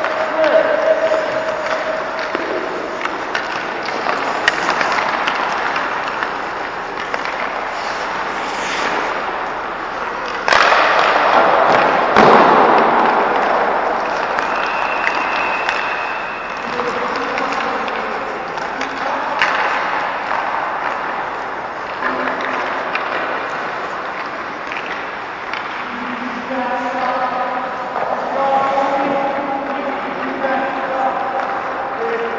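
Echoing indoor ice-rink sound: skate blades scraping on the ice, sticks and pucks knocking, and indistinct voices of players and coaches in the arena. A louder scraping rush lasts about two seconds, starting about ten seconds in.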